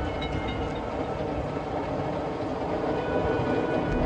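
Commuter train running, a steady rumble heard from inside the passenger car.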